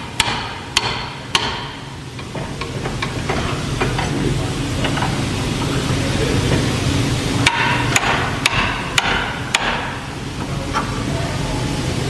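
Steel pry bar jabbed repeatedly into the inlet of a catalytic converter clamped in a vise, breaking up the ceramic core inside: sharp metallic knocks in clusters, three near the start and a quicker run of about five in the second half, over a steady low hum.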